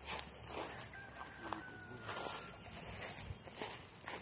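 A rooster crows once, faintly, a thin drawn-out call lasting about a second, over footsteps in the grass.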